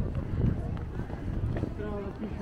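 Footsteps on stone paving, a step every third of a second or so, over a low steady rumble, with passers-by talking nearby; a voice comes in near the end.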